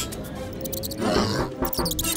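Cartoon background music with a loud animal-like cry about a second in, followed by a few short sharp sound effects.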